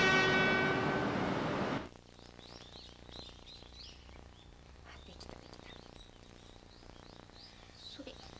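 A Shinkansen bullet train's horn sounding one long steady note that fades and cuts off sharply about two seconds in. After that, birds chirp faintly and repeatedly.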